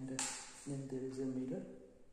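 A man's voice making drawn-out, wordless hesitation sounds, held fairly level in pitch, with a short hiss between them about a quarter second in.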